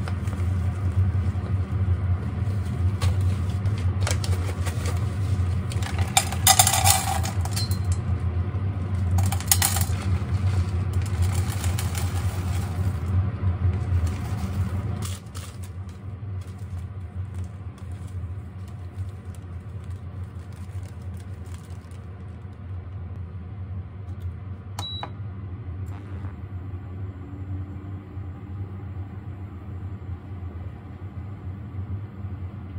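Candle wax flakes poured from a plastic bag into an enamel saucepan, rattling in two bursts a few seconds apart, over a steady low hum that drops away about halfway through. Small clicks and taps follow as the pot and materials are handled.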